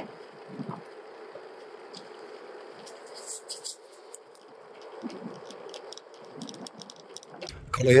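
Bicycle riding at speed on smooth asphalt: a steady hum of tyres on the road mixed with wind on the handlebar camera. A voice starts speaking just before the end.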